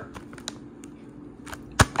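Fingers handling a bag of frozen salmon, making a few light clicks and one sharp tap near the end, over a steady low hum.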